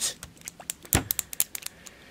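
Handling of a small glass hobby-paint bottle: scattered light clicks and taps, with one louder knock about halfway through.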